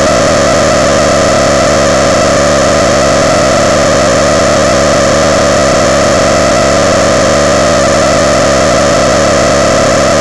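Harsh electronic noise from homemade noise-machine boxes: a loud, dense, distorted wall of sound with a strong midrange hum band, steady and unbroken, with no beat or melody.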